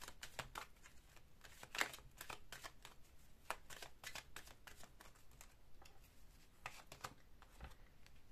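A deck of oracle cards being shuffled by hand: a faint, irregular string of soft card clicks.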